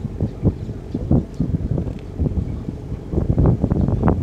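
Wind buffeting the microphone: an uneven, gusty low rumble that rises and falls throughout.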